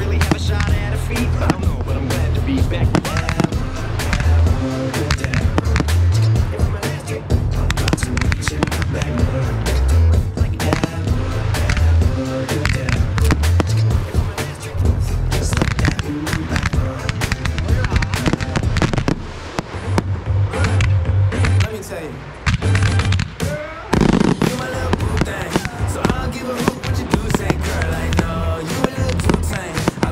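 A pop song with singing and a heavy bass beat, the soundtrack of a pyromusical, played over close fireworks: dense, rapid bangs and crackling reports. The fireworks thin out briefly about two-thirds of the way through, then a loud burst comes in.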